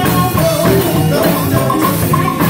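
Live gospel music: a woman singing lead into a microphone over a band with drum kit and a steady beat.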